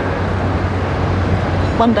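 Steady street traffic noise with a low, even engine hum underneath, during a pause in speech; a woman's voice starts again near the end.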